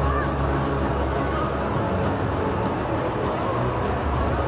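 Arena ambience: steady crowd noise over PA music with a heavy, even bass.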